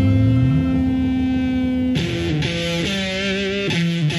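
Instrumental passage of a 1970s progressive rock track with guitar and bass: a held note for about two seconds, then a new phrase of wavering, vibrato-laden notes.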